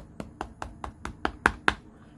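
Two fingertips tapping hard and rapidly on the glass back of a Samsung Galaxy S20 Ultra, about five sharp taps a second, the last few harder. The taps are meant to reseat a minor internal disconnection behind a black screen.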